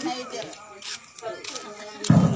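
Quiet talking voices, with no music playing.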